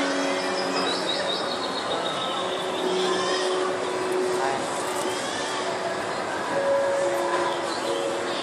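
Steady background hubbub of a busy indoor public space: indistinct voices and general room noise, with no one sound standing out.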